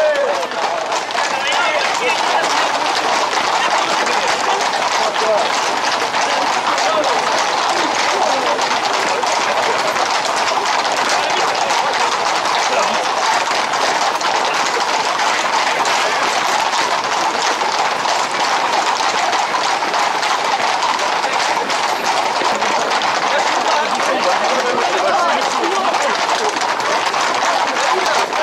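A dense, continuous clatter of many horses' hooves on an asphalt road as a tight pack of Camargue horses moves at a fast pace. Mixed in are a crowd's voices and the feet of people running alongside.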